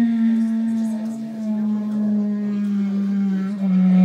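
Clarinet holding one long, low note that bends slowly downward in pitch, with a slightly deeper dip and swell near the end.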